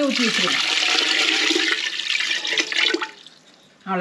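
Water poured from a stainless-steel pot into a clay pot over balls of pearl millet dough. It splashes steadily for about three seconds and then stops.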